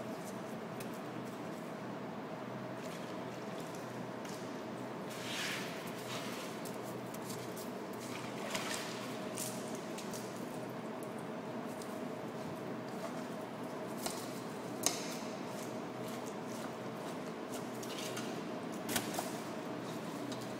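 A fillet knife trimming a raw fish fillet on a wet plastic cutting board: a few short, wet slicing and scraping strokes, about five, eight, fifteen and nineteen seconds in. A steady machine hum runs underneath.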